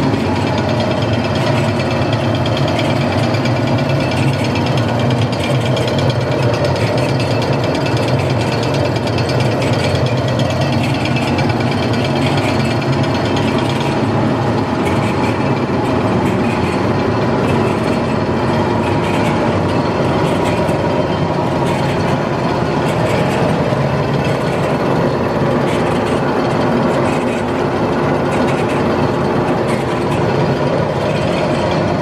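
White Cap VG2200LJG automatic steam capper running under power: its drive gearing and tabletop conveyor chain make a loud, steady mechanical sound with several steady tones layered through it.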